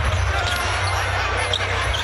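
Basketball being dribbled on the hardwood court during live play, under steady arena crowd noise.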